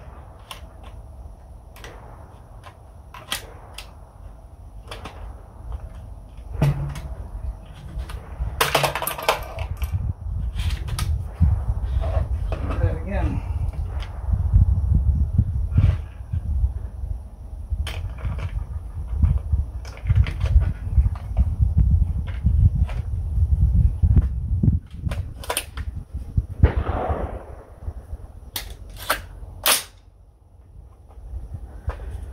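Rifle gunshots on an outdoor range: a dozen or more sharp cracks spaced irregularly, several close together near the end. Through the middle a heavy low rumble sits under them.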